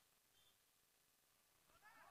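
Near silence, with a brief faint high-pitched chirp about half a second in and faint voices starting just before the end.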